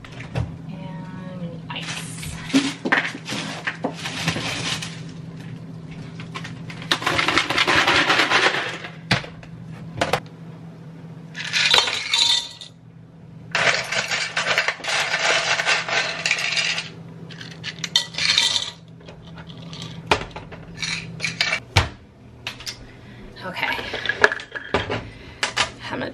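Kitchen handling sounds: rummaging and clattering bursts with sharp clinks of glassware, a jar and utensils as drink ingredients and a measuring spoon are set out on the counter. A low steady hum runs underneath and stops about four seconds before the end.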